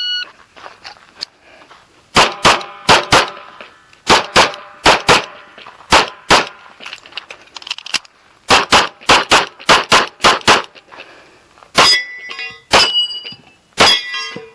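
A shot timer's start beep, then a Kimber Custom II 1911 in .45 ACP firing rapid pairs and strings of shots, with short pauses between strings as the shooter moves between positions. The last shot comes just before the end.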